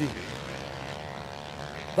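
Motocross bike engines running at a distance on the track, a steady drone that wavers slightly in pitch.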